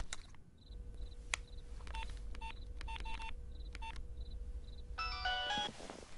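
Mobile phone keypad tones as a number is dialled: about eight short key beeps, then a quick run of dialling tones near the end, over a low hum.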